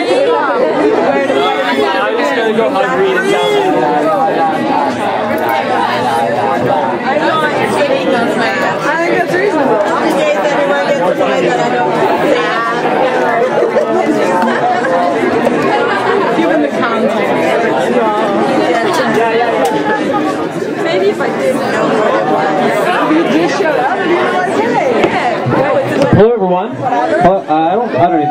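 Crowd chatter: many people talking at once, a steady mix of overlapping voices with no one voice standing out.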